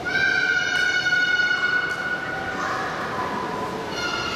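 A loud, steady, high whistle-like tone starts suddenly and holds for about two seconds, then gives way to a fainter, lower note.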